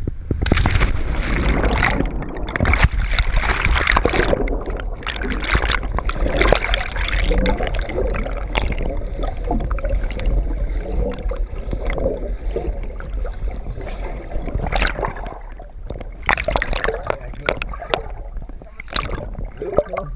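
River water rushing and bubbling around an action camera held under the surface, heard muffled with a deep steady rumble and irregular sharp knocks and splashes throughout.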